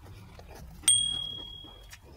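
A single bright bell ding, the notification chime of a subscribe-button animation. It strikes about a second in and rings out, fading over about a second.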